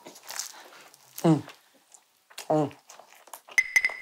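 A woman's appreciative "mmm" hums while eating pizza, two of them about a second apart, each falling in pitch. A brief high beep sounds near the end.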